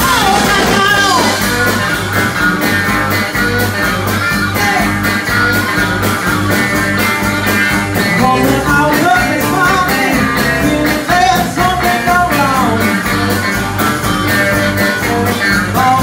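A live blues band playing an upbeat rock and roll number: electric guitar, bass guitar and drums keeping a steady beat, with a woman singing and a harmonica played through a microphone.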